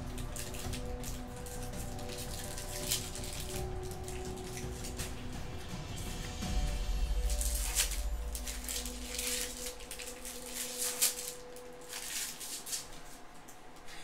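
Crinkling of a foil trading-card pack wrapper and cards being handled, in short crisp rustling bursts, over faint background music.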